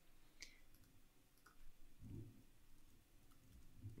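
Near silence with a few faint clicks of computer keyboard typing, and a faint soft low sound about halfway through.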